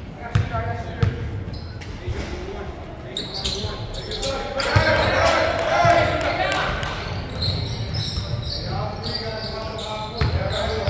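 Basketball game sounds in an echoing gym: a couple of sharp basketball bounces on the hardwood floor in the first second, then play running up the court with sneakers squeaking and players and spectators calling out. The voices are loudest around the middle of the stretch.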